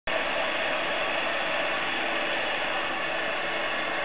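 Steady hiss of compressed air flowing through an air-driven, hydraulophone-like instrument, with no notes sounding.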